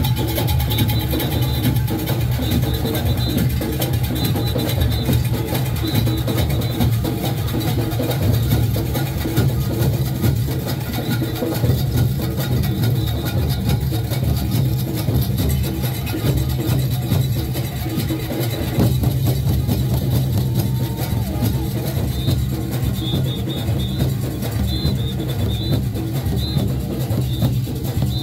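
A Junkanoo band's goatskin drums playing a fast, dense, unbroken beat.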